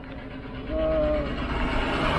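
A vehicle passes close by on the road, its noise swelling over the second half, after a short steady horn-like tone about a second in; a low engine rumble runs underneath.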